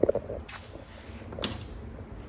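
A few light clicks and handling knocks, the sharpest about one and a half seconds in, over a faint background.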